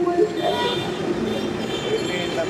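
A young girl speaking tearfully in Bengali into a handheld microphone, over street traffic noise. A high, horn-like tone sounds twice, briefly, about half a second in and again near the end.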